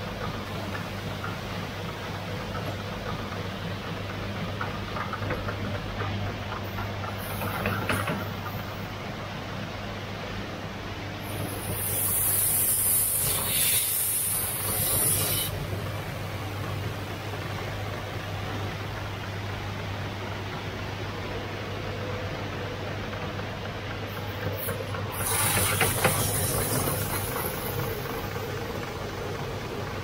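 Wet glass-lens grinding and polishing machines running with a steady motor hum and the wash of water on the spinning wheels. A brief high hiss comes about seven seconds in, and two louder, longer hissing spells come around twelve and twenty-five seconds in as the glass lens works against the wet wheel.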